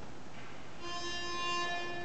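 Pitch pipe sounding a single steady starting note for the singers, beginning a little under a second in and held for about a second.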